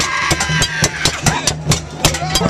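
Bongos beaten hard in a fast rhythm, about six to eight strikes a second, with voices shouting around them.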